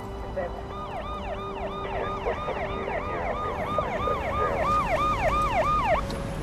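Police car siren in a fast yelp, about three rising-and-falling sweeps a second, growing louder until it cuts off suddenly at the end, over the low road rumble of a moving car. It is the siren of police pulling over a pickup truck.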